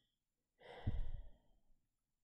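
A woman's sigh: one breathy exhale starting about half a second in and trailing off after about a second.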